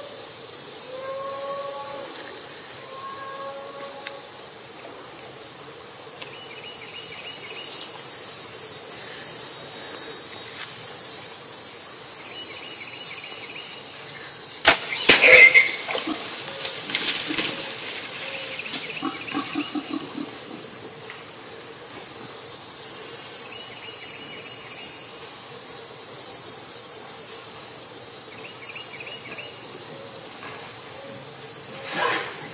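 Steady high insect buzzing with a repeating pulsed trill. About halfway through, a compound bow shot at feral hogs: a sudden burst of sharp cracks and thumps lasting about a second. Scattered softer knocks follow for a few seconds as the hogs scatter.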